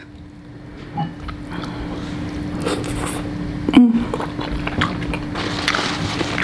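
Close-miked chewing and wet mouth sounds of someone eating tender braised lamb shank meat. There is a brief voiced 'mm' about four seconds in, over a faint steady hum.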